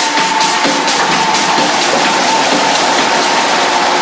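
Techno mix in a breakdown with no kick drum: a held synth tone and a noisy wash over light, fast hi-hat ticks.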